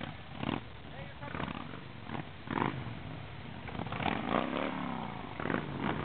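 Harley-Davidson V-twin touring motorcycles rumbling past one after another at low speed, with people's voices and shouts over the engines.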